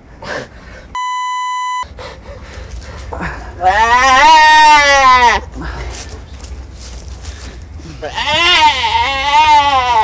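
A deer trapped in an iron fence bleating in distress: two long, loud, wavering calls, the first about three and a half seconds in and the second near the end. A short electronic beep sounds about a second in.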